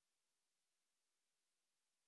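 Near silence: only a very faint, steady hiss of background noise.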